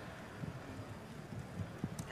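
Quiet room noise of a large hall heard through the PA microphone, with a few faint, soft knocks.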